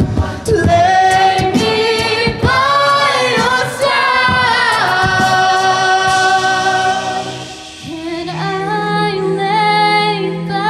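A cappella choir singing in close harmony, with beatboxed vocal percussion clicks under the voices through the first half. The voices hold a long chord, drop briefly near the end, then come back over a steady sung bass note.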